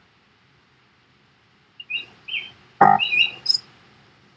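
A small bird chirping in short, high calls that start about two seconds in, after near silence, with one brief louder sound just before the three-second mark.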